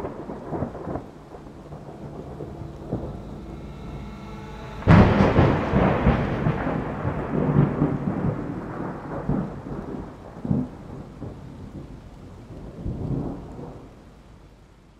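Thunderstorm with rain: low rolling thunder, then a sharp, loud thunderclap about five seconds in that rumbles on and slowly dies away, with smaller rumbles later.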